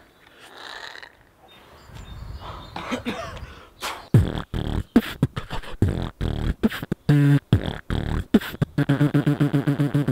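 Human beatboxing: after a quiet start, a fast run of mouth-made kick and snare sounds begins about four seconds in, ending in a rapid, evenly pulsing pitched bass buzz.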